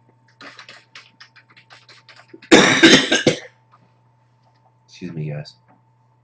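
Computer keyboard typing, a quick run of key clicks for about two seconds, then a loud cough, and a short throat-clearing sound near the end.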